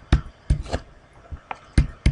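A plastic stylus tapping and clicking on a pen tablet while handwriting, about six short sharp taps spread over two seconds.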